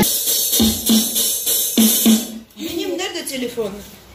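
Drum sounds from a roll-up electronic drum pad struck with drumsticks and played back through a subwoofer speaker: a handful of irregular hits over the first two seconds or so.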